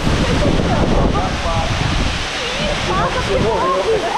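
Water sloshing and lapping against the microphone as the camera bobs at the surface of a waterfall pool, over the steady rush of the falls. Voices are heard faintly in between.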